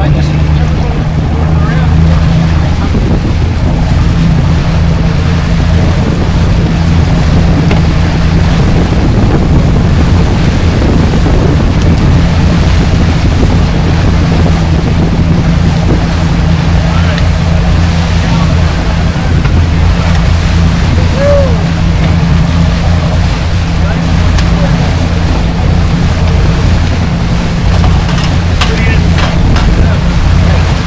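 A sportfishing boat's engines running steadily under way, a constant low drone, with the rush of wind and the wash of the wake.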